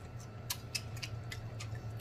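Mouth sounds of a man chewing food close to the microphone: a scatter of small wet clicks and smacks, over a faint steady low hum.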